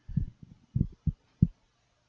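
About five soft, dull, low thumps, spread unevenly over the first second and a half: a glass measuring cup being handled and set down on a wooden cutting board.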